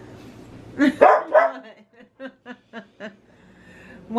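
A dog barking three times, loud, about a second in, then a run of short, quieter yips at about four a second: begging for the hot potatoes he has been told to wait for.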